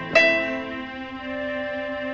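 Casio CDP-200 digital piano: one note struck just after the start, then a single steady tone held on as the playing stops. The player has forgotten the next note while playing from memory in the Step Up Lesson mode, and the lesson prompts him with the right notes.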